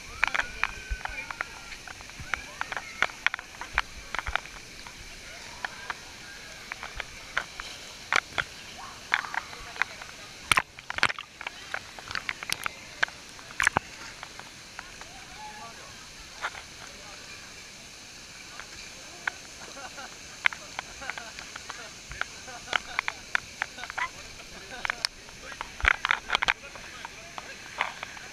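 Water splashing and slapping against a camera's waterproof housing at the surface of a swimming hole, in irregular sharp slaps over the steady rush of a waterfall.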